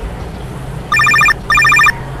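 Mobile phone ringing: two short trilling rings in quick succession, about a second in, over a low steady background hum.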